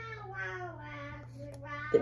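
A drawn-out vocal sound, quieter than the speech around it, held for almost two seconds with its pitch slowly falling.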